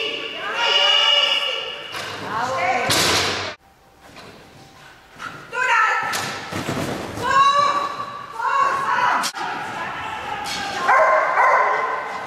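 High-pitched shouted calls echoing in a large hall. A loud thump about three seconds in is followed by a sudden cut, and a sharp knock comes about nine seconds in.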